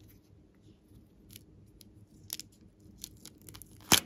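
Small scissors snipping the tip off a plastic piping bag of slime, with scattered light clicks and crinkles of the handled bag. One sharp, loud snap comes just before the end.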